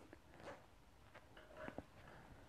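Near silence, with a few faint soft rustles and small ticks of yarn and a crochet hook being worked between stitches.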